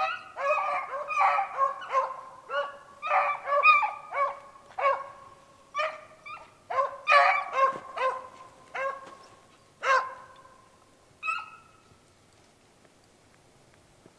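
Beagles baying in a quick run of short and drawn-out cries, each dropping in pitch at its end, with a last cry near the end: the hounds in full cry on a snowshoe hare's track.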